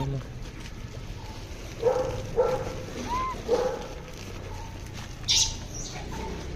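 Short animal calls: three or four brief yelps in the first half, a short rising-and-falling squeak, and a sharp high shriek near the end.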